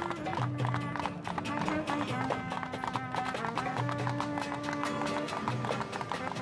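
Musical interlude with held notes and a quick, even clicking percussion beat.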